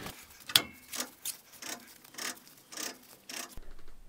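Faint, irregular clicks and light rubbing from a welded U-joint axle being handled and settled into place between the transaxle and the wheel hub, with one sharper click about half a second in.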